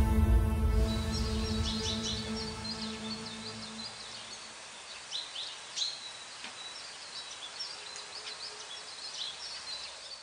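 Background music fading out over the first few seconds, giving way to birds chirping repeatedly over a steady outdoor hiss, with a couple of louder chirps around the middle.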